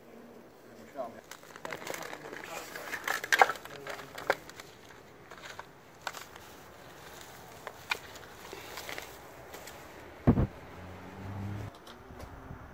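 Metal spade digging into soil and root-matted leaf litter to dig out arum lily plants: repeated scrapes, crunches and crackles of snapping roots and twigs, loudest a few seconds in. A heavy thump near the end.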